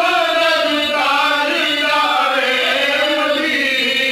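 Male voices chanting a slow, melodic Islamic devotional recitation.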